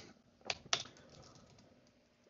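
A few faint keystrokes on a computer keyboard, clustered in the first second.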